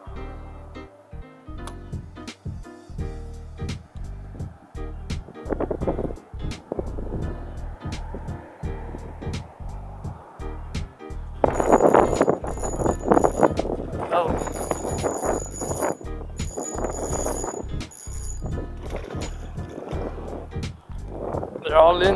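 Background music: a song with a beat, whose singing voice comes in loud about halfway through and runs for several seconds.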